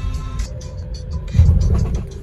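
Low road and engine rumble of a moving car heard from inside the cabin, swelling louder for a moment a little past the middle, with music playing over it.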